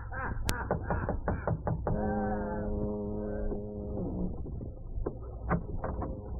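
Radio-drama sound effects on a docked boat in fog: a ship's horn sounds one long steady blast of about two seconds in the middle, then two sharp knocks on the cabin door come near the end.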